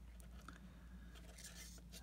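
Near silence over a low steady hum, with faint soft scratching as fine jewellery wire is threaded through a small hematite bead by hand.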